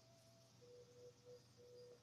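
Near silence: room tone, with a faint thin tone that gives way about a quarter of the way in to a fainter tone broken into short pulses.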